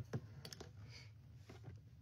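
A few faint clicks and taps, mostly in the first half-second, over quiet room tone.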